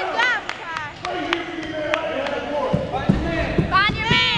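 Voices calling out in a gym during a youth basketball game, with a basketball bouncing on the court in sharp knocks, several in the last second or so.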